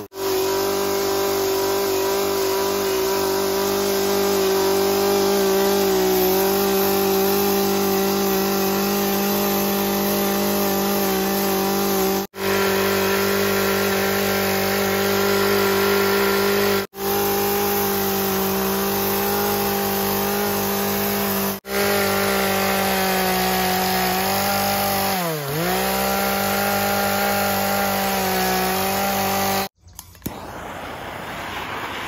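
Poulan Pro two-stroke chainsaw running at high revs as it carves into a wooden log, holding a steady pitch. About three-quarters of the way through, the pitch drops and then recovers as the saw bogs under load. The sound breaks off for an instant several times.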